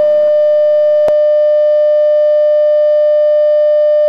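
A loud, steady electronic test tone: one unchanging pitch with faint overtones that cuts in suddenly, with a single click about a second in.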